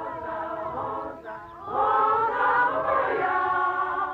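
A group of women singing their national anthem together in unison, unaccompanied, on long held notes. The singing swells louder a little under two seconds in.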